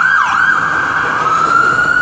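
Loud emergency vehicle siren: a few quick yelping swoops in the first half second, then a slow rise into a long steady wail.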